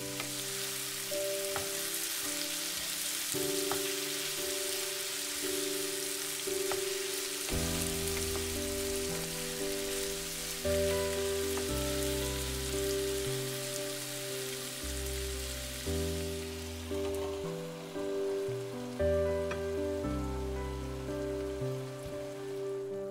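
Frying pan of lemon pieces, ginger, garlic and curry leaves in oil sizzling as it comes to the boil, stirred now and then with a wooden spatula, with a few light taps. The sizzle dies down over the second half, under background music with a slow changing bass line.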